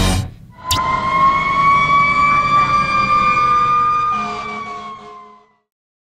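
A sharp click, then a single drawn-out siren tone that rises slightly, sinks back and fades away.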